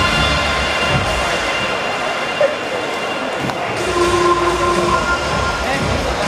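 Busy indoor arena hubbub: crowd chatter and noise with music over the public address. There is one short knock about two and a half seconds in.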